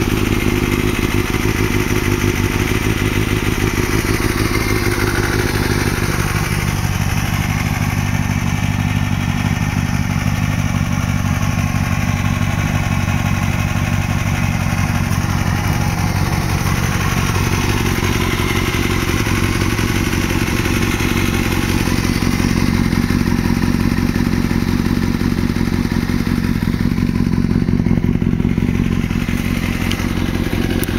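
2006 Kawasaki ZX-6R 636's inline-four engine idling steadily through a Yoshimura RS-5 slip-on exhaust.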